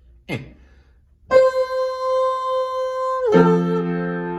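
Yamaha piano played with both hands: a single note is held for about two seconds, then a chord with bass notes is struck and rings on.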